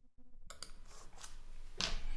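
Faint rustling and clicking over a video-call microphone, after a soft hum at the start; a man's voice begins near the end.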